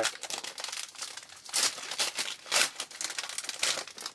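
A trading-card pack's wrapper being torn open and crinkled by hand, an irregular crackling with several louder rips, then the cards sliding out.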